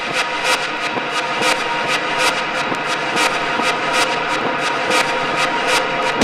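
Techno played from vinyl in a breakdown: the kick drum and bass are gone, leaving a noisy wash with held tones and crisp, hi-hat-like ticks about four a second.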